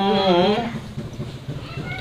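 Dao folk singing (páo dung), a single voice without accompaniment: a long held note wavers and falls away about half a second in, followed by a pause between sung lines.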